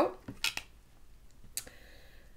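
Tarot cards being handled: a card is drawn off the deck and laid down on the table, with a couple of sharp clicks about half a second in and another about a second later.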